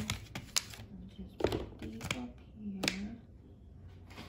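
Several sharp clicks and taps of objects being handled, spaced irregularly, among short low murmured voice sounds.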